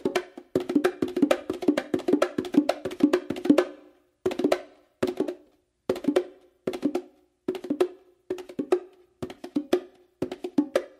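Meinl bongos played with bare hands in a five-stroke-roll combination of finger strokes, opens and closed slaps, with the left hand taking much of the work. For the first four seconds the strokes come fast and close together. After a brief pause they return as short, evenly spaced groups of strokes, a little under a second apart.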